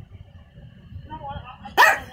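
A small dog barks once, sharply, near the end, after a softer wavering sound.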